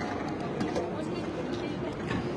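Shopping-centre background noise: a steady hum with faint, indistinct voices of people around.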